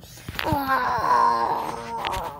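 A person's voice making a long drawn-out moan as a vocal sound effect for toy figures. It slides down at first, then holds one pitch. A couple of short handling knocks come near the start.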